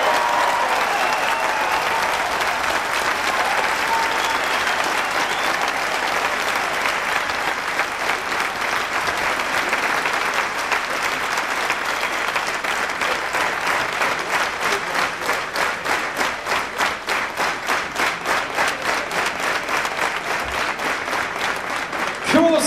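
Audience applauding at length, with a few cheers near the start. About halfway through, the clapping settles into a steady rhythmic clap of about three claps a second.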